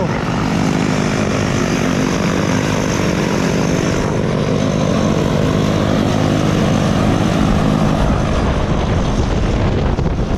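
Propeller-driven jump plane's engine running steadily close by, a constant droning. Wind noise on the microphone builds up near the end.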